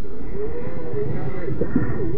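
GMade R1 rock buggy's 540 27T electric motor and geared drivetrain whining under throttle as it climbs rocks, played back at quarter speed, so the whine comes out as low tones that bend up and down.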